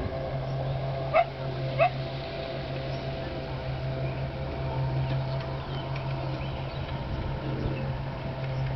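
Two short, high animal yips, about half a second apart, a little over a second in, over a steady low hum.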